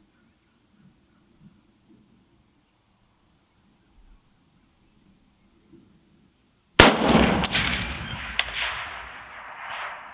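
A USMC MC-1952 M1 Garand sniper rifle in .30-06 fires a single shot nearly seven seconds in: a sharp crack with a long echoing tail that dies away over about three seconds, with a couple of short sharp clicks in the tail. Before the shot there is near silence.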